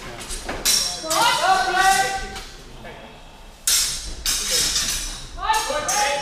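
Loud calls from raised voices, echoing in a large sports hall, about a second in and again near the end, with a few sharp knocks between them, typical of a fencing exchange being halted.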